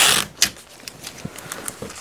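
Masking tape pulled briefly off the roll in one short, loud rip, followed by a click and light rustling and ticking as the tape and emery cloth are handled on a wooden bench.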